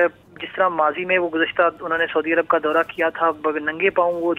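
Only speech: a man reporting in Urdu over a telephone line, the voice thin and narrow.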